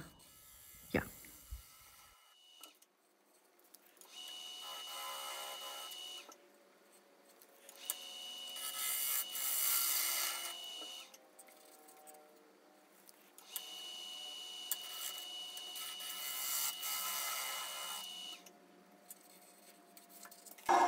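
Bowl gouge cutting across the inside bottom of a spalted beech bowl spinning on a lathe: three passes of a few seconds each, with a steady high tone during each pass and quieter gaps between them. These are finishing cuts to get the bowl's bottom flat.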